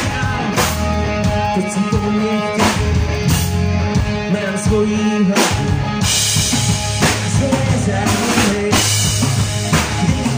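Live rock band playing loudly: electric guitars and bass over a full drum kit, with cymbal crashes every few seconds.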